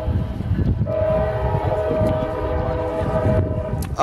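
Diesel locomotive air horn sounding one long, steady chord of several notes lasting about three seconds, over a low rumble.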